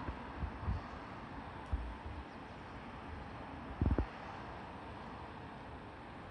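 Steady faint background hiss with a few low bumps on the microphone, the strongest a double bump about four seconds in.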